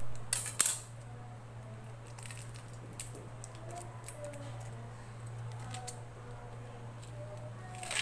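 Kitchen knife cutting a red onion on a counter: a few sharp knocks of the blade, two close together at the start, one about three seconds in and another near the end, over a steady low hum.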